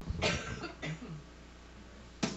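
A single short cough near the start, followed by quiet room noise.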